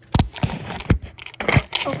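Handling noise close to the microphone: several sharp knocks and rubbing scrapes as the recording camera is moved about and covered.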